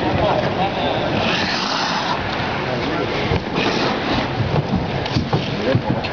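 Sounds of ice hockey play in a large, mostly empty rink: skate blades scraping the ice in short hissing bursts, sticks and puck clicking, and players' distant shouts over a steady background noise.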